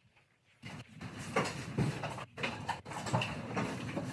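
Dairy cows in parlor stalls, with irregular shuffling and short animal sounds starting about half a second in.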